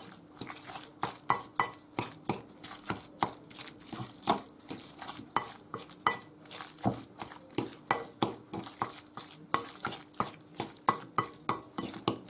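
Metal fork scraping and clinking against a glass bowl as flaked tuna is mixed, in a quick, uneven run of strokes, about three a second.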